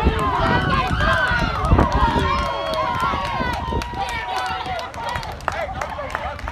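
Several spectators shouting and yelling at once as a player breaks away on a long run, their voices overlapping, with one long drawn-out yell held for a couple of seconds near the middle.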